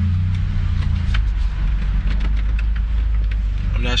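The Honda Prelude's H22A1 2.2-litre four-cylinder engine running steadily at low revs, heard from inside the cabin, with its ignition timing just set to 15 degrees. Its low hum dips slightly in pitch about a second in, with a few faint clicks.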